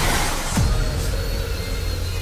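Trailer soundtrack: electronic score with a dense noisy sound-effect wash over heavy steady bass, and a deep falling sweep about half a second in.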